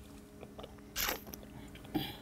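A short, noisy sip of port from a wine glass about a second in, followed by a small click near the end.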